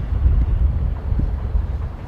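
Wind buffeting the microphone outdoors: a steady low rumble, with a faint thud about a second in.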